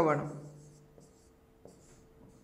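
A man's voice trails off at the start, then a stylus makes a few short, faint scratching strokes as it writes on a tablet.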